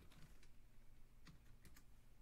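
A few faint computer keyboard keystrokes, scattered taps.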